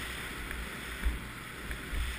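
Snow sliding hiss and wind rushing over the camera's microphone during a fast downhill run through snow, with two low thumps from bumps, about a second in and near the end.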